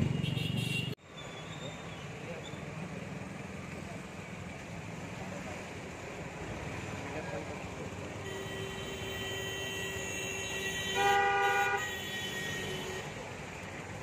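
Street traffic noise with a vehicle horn honking, loudest for about a second near 11 s in, over a fainter, longer horn-like tone.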